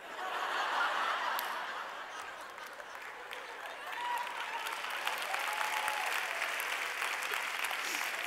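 Large audience laughing and applauding, a dense patter of clapping mixed with laughter. It eases slightly in the middle and swells again about four seconds in.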